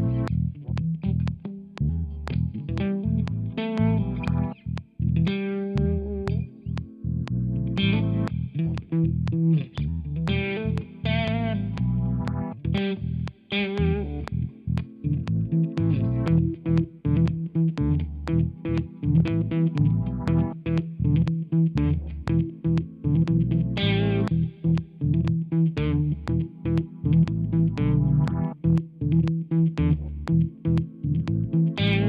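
Electric guitar playing short, choppy rhythmic chords over a bass guitar line.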